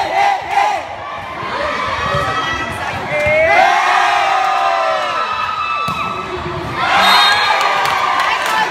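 A crowd of spectators, many of them children, shouting and cheering. Long drawn-out cheers swell about three and a half seconds in, and a fresh loud burst of shouting comes about a second before the end.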